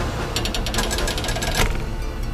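Rapid mechanical clatter, a fast even run of clicks, about a dozen a second, lasting just over a second, over a steady low rumble.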